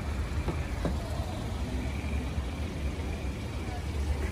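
A steady low rumble of outdoor street ambience, with two faint clicks about half a second and a second in.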